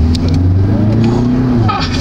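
Škoda Kodiaq's 200 hp 2.0-litre four-cylinder TDI diesel accelerating hard, heard from inside the cabin, its engine note climbing steadily and then dropping near the end.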